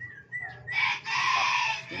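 A rooster crowing once, a harsh call lasting about a second in the second half, after a few faint high chirps.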